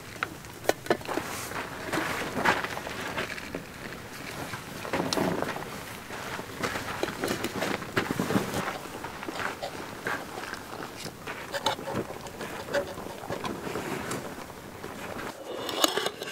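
A fork clicks sharply against a metal camp plate a few times near the start as biscuits are split, followed by softer scraping and handling noises over a steady outdoor background.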